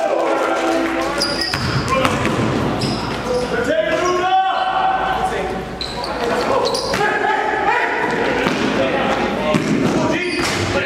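Basketball game sounds echoing in a large gym: a ball bouncing on the court, with indistinct voices of players calling out.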